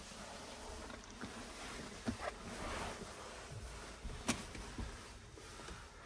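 Quiet rustling and handling noise from a person climbing forward into a van's driver's seat with a camera in hand, with short knocks about two seconds and about four seconds in.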